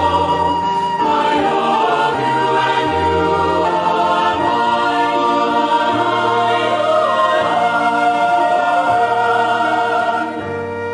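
Choir singing a slow hymn in held chords that change every second or two over a sustained low part.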